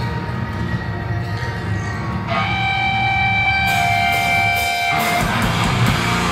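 A live hardcore band's amplified guitars and drums before the song gets going. A low rumbling drone runs throughout; a sustained high guitar tone enters about two seconds in and holds for around three seconds, and cymbal strikes join about halfway through.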